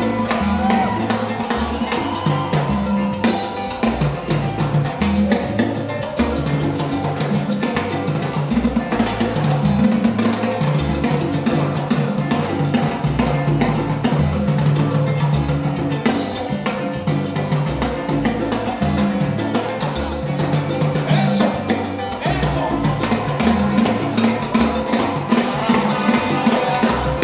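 Live salsa band playing: a stepping bass line under dense Latin percussion.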